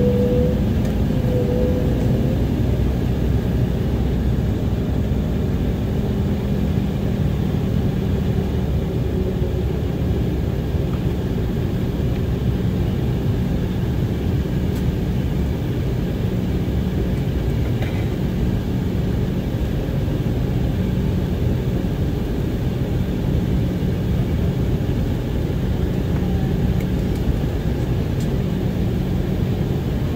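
Steady cabin rumble of an Embraer 190SR jet taxiing, its General Electric CF34 turbofan engines at idle, heard from inside the cabin beside the engine. There is a low hum throughout, and a higher steady tone fades away in the first couple of seconds.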